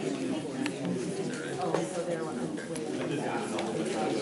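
Indistinct, low conversation: voices talking quietly in a meeting room, with no words clear enough to make out.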